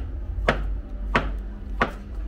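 Kitchen knife chopping through boiled potato onto a plastic cutting board: three sharp chops, about two-thirds of a second apart.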